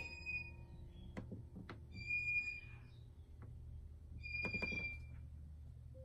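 Quiet room with a steady low hum, three short, high whistle-like chirps and a few soft clicks.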